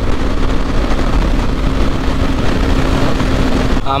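Bajaj motorcycle ridden at a steady cruising speed: heavy wind rush over the camera microphone with the engine's even hum underneath, holding one pitch.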